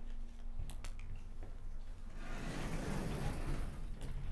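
A vertical sliding chalkboard panel being moved along its track: a rushing, rumbling scrape for about two seconds in the second half, after a few faint clicks.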